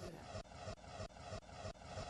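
Electronic transition sound effect of a news channel's logo outro: an even, pulsing whoosh of about four beats a second.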